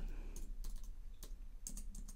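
Computer keyboard being typed on: a scattering of irregular, quiet key clicks.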